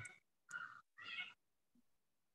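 Three short, faint vocal calls in quick succession, each under half a second.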